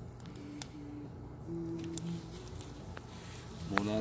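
Wood fire burning in a homemade cement rocket stove, with a few faint sparse crackles. A faint low hum comes and goes during the first half.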